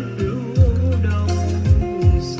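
A song with a singing voice and deep bass drum hits about once a second, played loud through a Tiso 448 karaoke trolley speaker.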